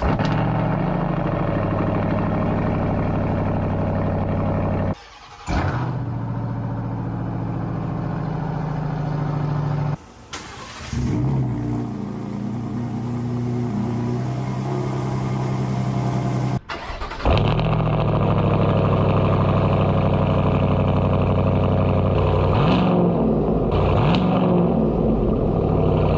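Truck exhaust clips cut one after another: a 2022 Chevy Silverado ZR2's 6.2-liter V8 through an AWE off-road exhaust, running with a throaty note and a few revs near the end, and a Gen 3 Ford Raptor's cold start, the engine catching and settling into a fast idle. The clips change abruptly about five, ten and seventeen seconds in.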